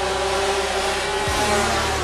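A pack of 500cc two-stroke Grand Prix racing motorcycles running hard through a corner, several engine notes overlapping and shifting slightly in pitch.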